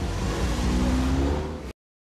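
A car engine accelerating, a loud low rumble with a slowly rising tone, cut off suddenly near the end.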